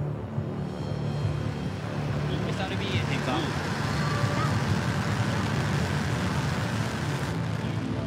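Rocket engines at liftoff: a loud, dense rushing roar that builds from about two seconds in and holds, over low, steady background music.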